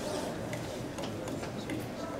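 Ambience of a large indoor soccer hall: a steady background murmur with a few scattered light clicks.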